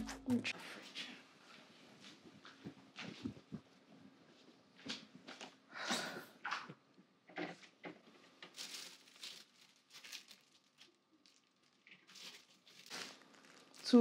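Quiet, scattered rustles and crinkles of plastic bread bags being handled at an open refrigerator, with a few soft knocks in between.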